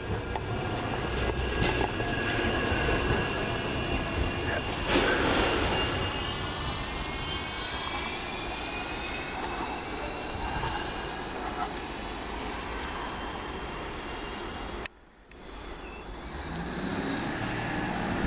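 Manchester Metrolink M5000 tram running on its approach, its traction motors giving a whine of several tones that falls slowly in pitch over a rumble of wheels on rail, with a brief rush of noise about five seconds in. Near the end the sound cuts off abruptly and a different low hum rises.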